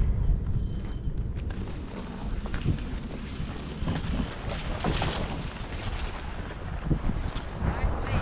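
Wind rumbling on the microphone of a camera carried while skiing, over the hiss and scrape of skis sliding on packed snow.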